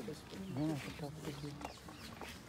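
Speech: a single voice talking briefly and quietly, with the small sounds of a group gathering.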